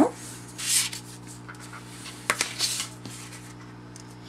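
A bone folder rubbed along the folds of cardstock to crease the score lines, with two short rubbing strokes about two seconds apart and a light tap between them, over a steady low hum.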